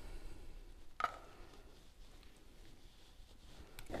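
A spoon working thick coconut yogurt out of a plastic measuring cup into a glass mixing bowl. It is mostly faint, with one light tap about a second in.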